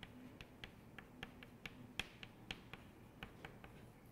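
Chalk tapping and scratching on a chalkboard during writing: a quick, irregular series of faint sharp clicks, the loudest about two seconds in.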